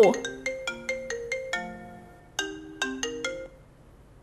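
Smartphone ringtone for an incoming call: a tune of short struck, ringing notes that repeats its phrase, then stops about three and a half seconds in as the call is picked up.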